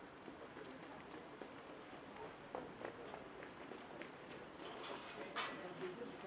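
Faint outdoor background with distant voices and a few scattered short knocks.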